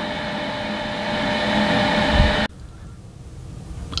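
A mains electrical appliance drawing about 5.6 amps AC runs with a steady whirr, rising slightly in level. It cuts off abruptly about two and a half seconds in, leaving faint room tone.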